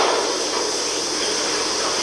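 A steady, even hiss with nothing below a low cutoff, like static on the launch's countdown audio feed between calls.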